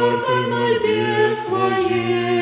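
Two women's voices singing an Orthodox kant a cappella, with long held notes that shift in pitch a couple of times.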